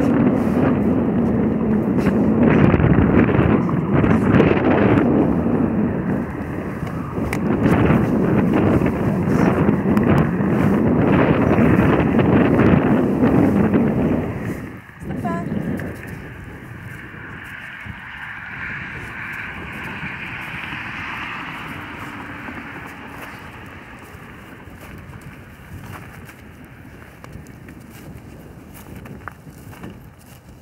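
Wind buffeting the microphone: a loud, rough rumble for about the first fourteen seconds, then dropping suddenly to a much quieter hiss.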